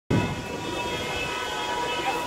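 A wedding convoy's car horns held down together in one steady, continuous blare of several tones at once.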